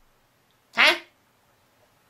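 A man's single short questioning "huh?", rising in pitch, about a second in; otherwise near silence.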